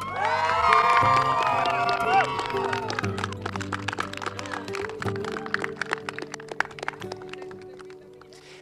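A crowd of wedding guests cheering and applauding over soft background music. The cheers die away after about three seconds, and the clapping goes on, thinning out toward the end.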